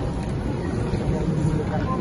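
Steady low rumble of a large airport terminal hall, with faint, indistinct voices.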